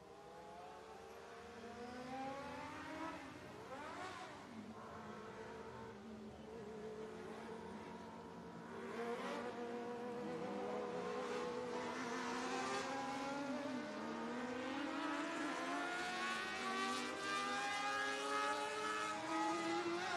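Dwarf car's motorcycle engine revving up and down through the corners and straights of a qualifying lap on a dirt oval, getting steadily louder as the car comes nearer.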